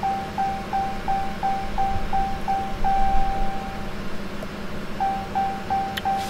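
An electronic chime beeps in a steady run of short, same-pitched tones, about three a second. Around three seconds in it holds one longer tone, falls quiet for about a second, then starts beeping again near the end. A low steady hum runs underneath.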